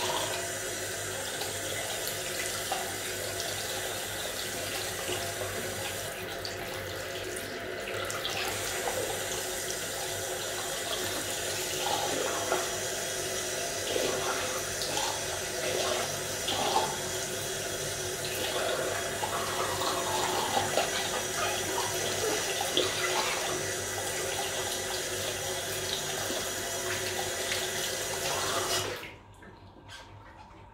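Bathroom sink tap running steadily into the basin, the stream splashing unevenly off a smartphone held under it. The water cuts off abruptly near the end.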